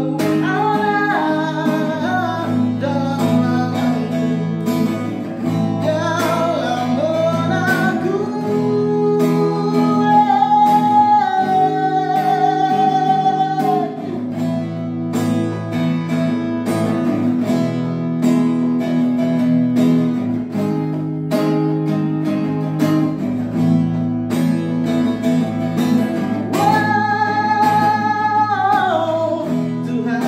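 Cutaway acoustic guitar strummed hard in steady chords, with a voice singing long held and gliding notes over it.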